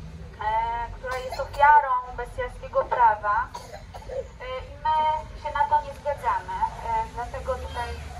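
Speech only: a woman speaking through a handheld megaphone, in phrases with short pauses.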